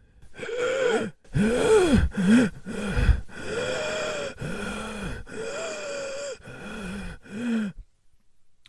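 A woman's voice acting out a badly wounded man's agony: a string of about eight drawn-out groans and gasping cries, each rising and falling in pitch.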